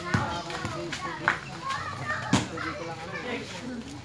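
Young players' voices calling out and chattering over a pickup basketball game, with three sharp knocks about a second apart, a basketball bouncing on concrete, the loudest a little past the middle.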